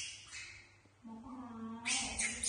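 Baby macaque calling: short high squeaks near the start, then one drawn-out, steady cry lasting almost a second in the second half.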